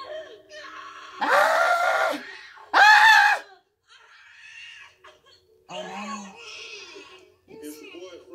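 A woman screaming in labour during a delivery: two long, loud cries about half a second apart, the second the loudest, followed by quieter talk.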